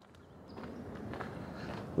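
Faint footsteps of someone walking across mulch and grass, with a little outdoor background noise. It rises out of silence at the start.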